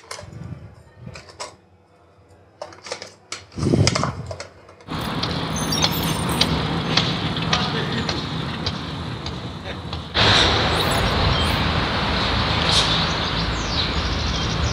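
Small clicks and knocks of things being handled at a kitchen counter for the first few seconds, then steady outdoor noise that steps up louder about ten seconds in.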